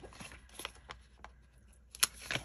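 A few faint clicks and light paper rustling as tweezers and sticker backing are handled on a planner page.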